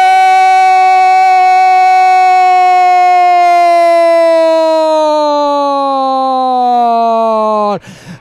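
Football commentator's long, drawn-out shout of "¡Gol!" calling a goal: one loud, held note lasting nearly eight seconds that sags in pitch over its last few seconds before he breaks off to breathe.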